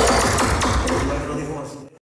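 Dance music from a mobile sound system with voices over it, fading down and then cutting off just before the end.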